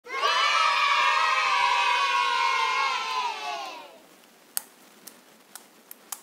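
A crowd of children cheering and shouting for about four seconds, the voices sliding down in pitch as it fades. Then a few sharp clicks about every half second as the slime is squeezed in the hand.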